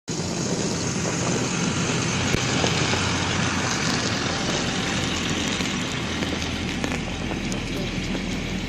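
School bus engine running steadily as the bus pulls away and drives past at low speed.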